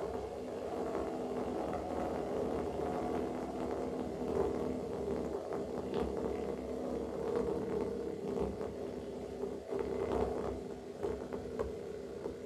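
Amplified glass played with the mouth through a contact microphone: a steady droning tone with overtones, with scratchy scrapes and squeaks running through it.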